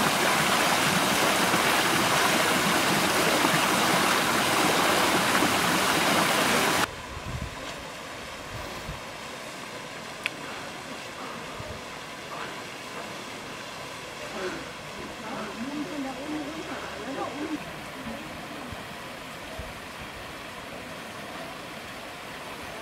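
Garden fountain water splashing loudly and steadily, cut off abruptly about seven seconds in. After that, faint open-air ambience with distant voices of people talking.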